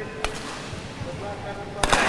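Sharp smacks typical of badminton rackets striking a shuttlecock, echoing in a large hall: a single crisp hit early on, then a louder double hit just before the end, over a steady background of voices.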